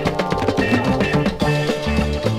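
Instrumental passage of a psychedelic rock song: a drum kit keeps a steady beat under a bass line and held melodic notes, with no singing.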